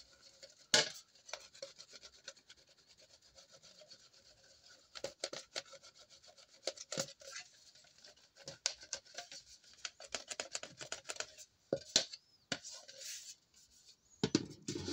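A Teflon rod rubbing and pressing against the inside of a thin aluminium phonograph horn, working out dents in a run of short, irregular scraping strokes. A sharp click about a second in is the loudest sound.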